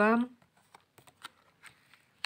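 A word ends at the start, then faint, scattered soft clicks and slides of a tarot card being drawn and laid down on the table.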